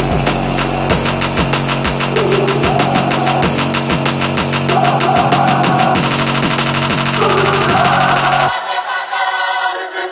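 Electronic background music: rapid drum hits that grow denser over a steady bass line, building up. The bass cuts out about eight and a half seconds in, leaving only thinner high parts.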